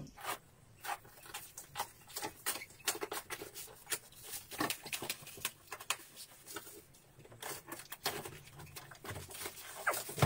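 Cardboard shipping box being opened by hand: irregular crackles, scrapes and rips of packing tape, plastic wrapping and cardboard, several each second.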